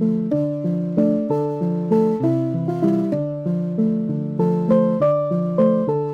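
Casio LK-43 electronic keyboard playing a short two-handed melody at a quick tempo, about three notes a second over lower held notes.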